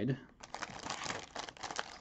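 A clear plastic bag of LEGO pieces and paper inserts crinkling and rustling in the hands as they are handled, with many small irregular clicks.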